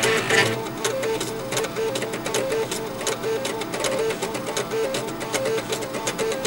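Stepper motors of eight floppy disk drives playing a tune: the read/write heads are stepped at audio rates so each drive sounds a pitched note. A quick, evenly paced run of short notes with a ticking edge.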